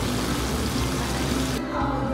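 Fountain water splashing as it spills from the upper bowl into the pool below, a steady rushing patter that cuts off suddenly about three-quarters of the way through. Background music plays underneath.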